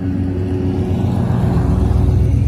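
A car driving past close by, its noise swelling toward the end, with music playing underneath.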